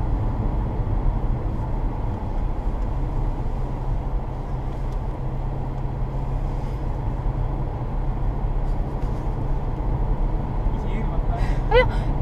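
Steady low drone of a car's engine and tyres on the road, heard inside the cabin while driving at a constant speed.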